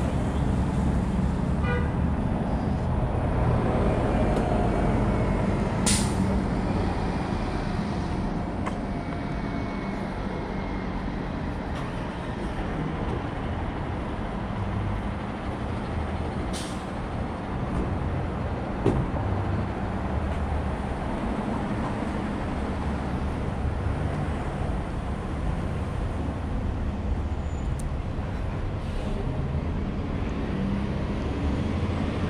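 City street traffic: a steady rumble of passing cars and heavier vehicles, with two short, sharp hisses about six seconds in and again near seventeen seconds.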